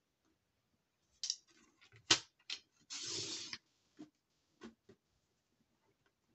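Sharp clicks of card being set against a paper trimmer, then one short rasping stroke of the trimmer's sliding blade cutting through the card, followed by a few light taps.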